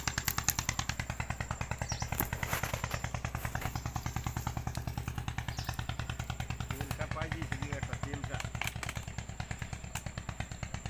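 An engine running steadily with an even chugging beat of about eight or nine beats a second.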